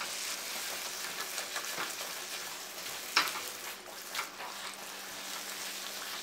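Tomato and vegetable mixture sizzling in a nonstick wok while a flat spatula stirs and mashes it, with two sharper spatula knocks about three and four seconds in.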